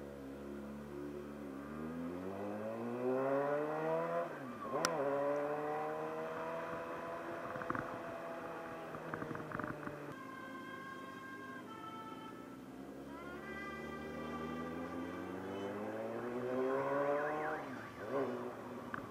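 Motorcycle engine accelerating through the gears: the pitch climbs, drops sharply at a gear change about four seconds in, eases off, then climbs again to another shift near the end. A short run of higher tones stepping down and back up sounds briefly in the middle.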